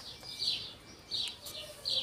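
Small birds chirping: a string of short, high chirps, each falling in pitch.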